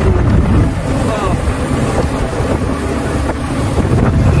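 Wind buffeting the microphone over the steady low rumble of a vehicle engine and road noise, recorded from a moving vehicle.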